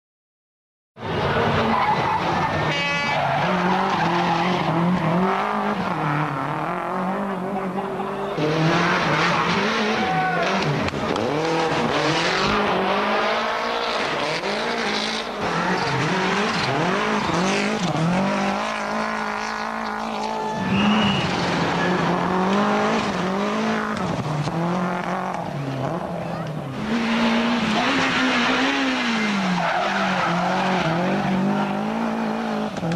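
Toyota Celica GT-Four ST165 rally car's turbocharged four-cylinder engine revving hard, its pitch climbing and dropping again and again through gear changes and lifts, with tyre squeal as the car slides through corners. It starts about a second in.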